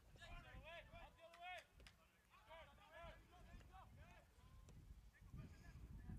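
Faint, distant voices of players calling out on the pitch, picked up by the field microphones, with a few soft knocks.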